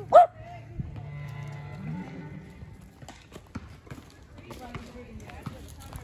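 A dog gives one short bark or yip just as it begins. Then comes a held musical tone for about a second, followed by scattered footsteps on dry leaves and dirt.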